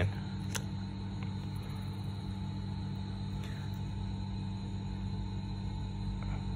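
A steady low hum or drone throughout, with a faint click about half a second in and another near the one-second mark as the fountain pen and its push-pull converter are handled at a glass ink bottle.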